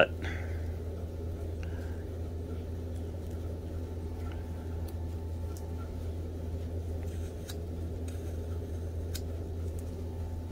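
Whittling knife taking small cuts in a block of wood, heard as a few faint, sharp clicks and scrapes over a steady low hum.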